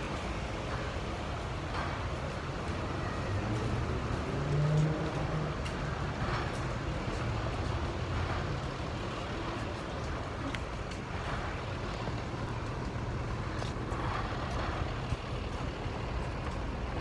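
Street traffic: a steady low rumble of passing vehicles, with one engine rising in pitch as it accelerates about four to five seconds in, the loudest moment.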